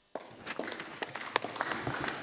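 Applause from members of a parliament chamber, a dense patter of hand claps that breaks out a moment in right after a speech ends and carries on.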